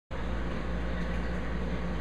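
Steady low hum with an even hiss above it, the running noise of a large reef aquarium's pumps and equipment.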